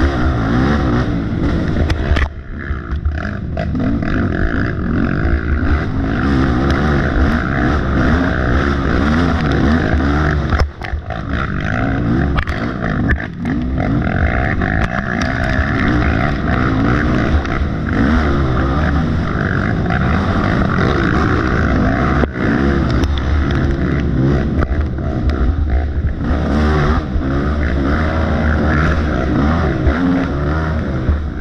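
Racing ATV engine under hard throttle, its pitch rising and falling as the rider works the throttle through the trail. There are brief drops off the throttle about two, eleven, thirteen and twenty-two seconds in.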